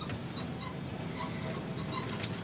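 Truck engine running steadily, heard from inside the cab as a low even rumble, with a few faint light ticks.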